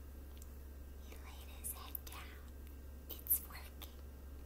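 A woman whispering softly, with no voiced pitch, over a steady low hum.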